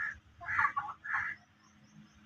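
Free-ranging desi chickens clucking as they feed, three short calls about half a second apart in the first second and a half.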